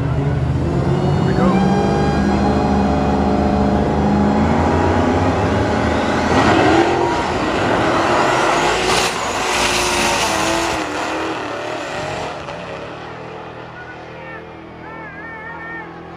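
Drag cars, a Dodge Challenger SRT Demon with its supercharged Hemi V8 and a donk, running on the line with the engine note climbing, then at full throttle about six seconds in with a rising whine, loudest over the next few seconds. The sound fades away as the cars run off down the strip near the end.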